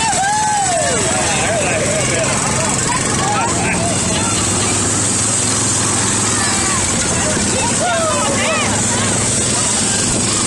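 Motorcycle and small parade-vehicle engines running steadily, with voices calling out from a crowd over them.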